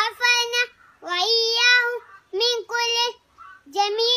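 A young boy chanting an Arabic supplication in a high, melodic voice: about four held phrases with short breaths between.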